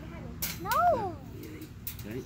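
A person's wordless exclamation that rises and falls in pitch, about half a second in, with a sharp click just before it and another near the end.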